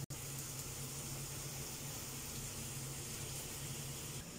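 Steady sizzle of chicken and vegetables frying in a pot on a gas stove, with a steady low hum beneath.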